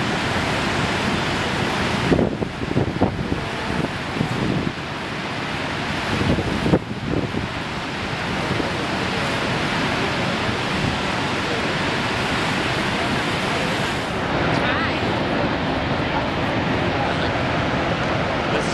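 Horseshoe Falls at Niagara: a steady, loud roar of heavy falling water, with wind buffeting the microphone in uneven gusts a few seconds in.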